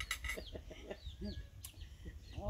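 Chickens clucking faintly in a few short, scattered calls.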